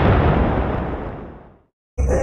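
Booming sound effect ending an electronic channel intro, dying away with its highs fading first, down to silence about three-quarters of the way through.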